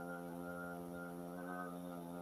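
A steady buzzing hum with many evenly spaced overtones, unchanging in pitch.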